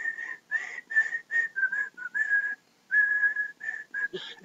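A man whistling a song tune through pursed lips: a run of short, clear notes that dip lower in the middle, with one longer held note about three seconds in.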